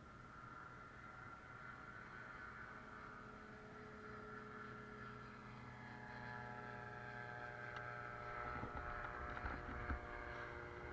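Air Command gyroplane's engine running at idle, a steady hum that slowly grows louder and shifts in pitch a little over halfway through, with a few short thumps near the end.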